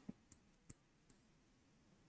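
Near silence broken by a few faint clicks of a marker tapping and stroking on a whiteboard.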